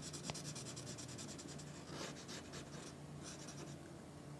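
Red felt-tip marker shading on paper with quick back-and-forth strokes, faint, mostly in the first half.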